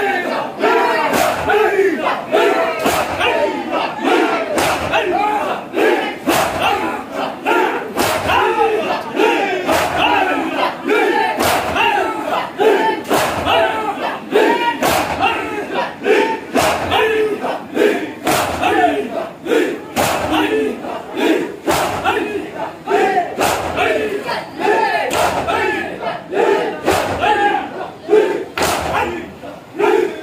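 A crowd of men performing matam: many hands striking chests together in a steady beat, about one and a half strikes a second. Massed voices chant and shout loudly over the beat.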